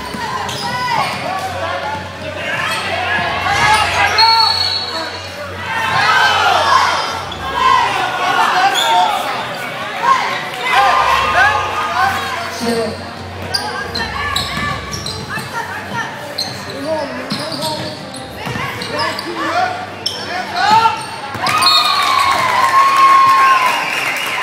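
A basketball being dribbled and sneakers squeaking on a hardwood gym floor during live play, in short rising and falling chirps with scattered knocks, echoing in a large hall. Shouts and chatter from players and the crowd run underneath.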